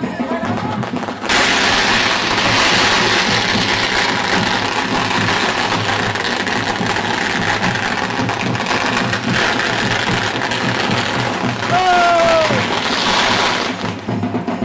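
A ground fountain firework hissing loudly and steadily as it sprays sparks. The hiss starts suddenly about a second in and dies away just before the end, over band music.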